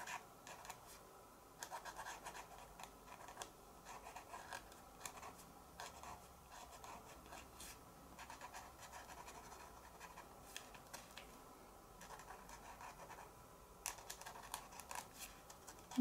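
Faint scratching of a white Posca paint pen's fine tip drawing short strokes over heat-embossed card, irregular, with brief pauses between strokes.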